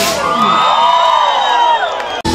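Concert crowd cheering and screaming, many high voices overlapping in long rising and falling cries, as the band's music breaks off with a sharp hit at the start.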